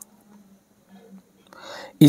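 A quiet pause in a man's speech: a faint steady hum, then a soft intake of breath in the last half second.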